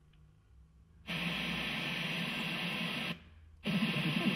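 FM radio reception from a Bluetooth USB player module's tuner, played through its speaker while it is tuned from a phone app. It is silent for about a second, then gives about two seconds of steady hissy, noisy reception, mutes for half a second as it steps to a new frequency, and comes back near the end.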